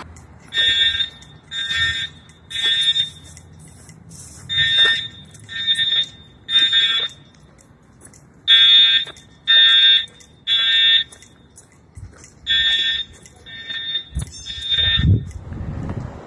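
An electronic alarm beeping in the three-beep pattern typical of a fire or smoke alarm: three short high beeps, a pause, then the group again, four times over.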